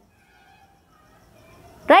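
A pause in a woman's speech, with only faint background sound and a few faint thin tones. Near the end her voice comes back, rising in pitch on the word "Right?"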